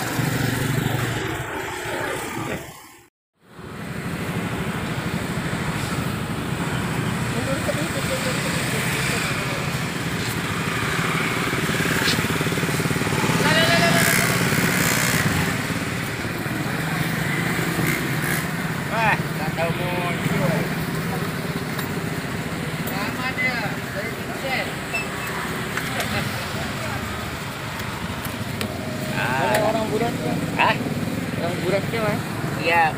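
Busy market ambience: indistinct voices and chatter over a steady din, cut by a sudden brief silence about three seconds in.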